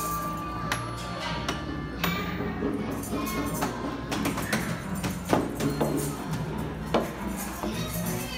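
Metal bars of a large floor glockenspiel struck with mallets: scattered ringing notes, one held ringing tone at the start, then irregular single strikes.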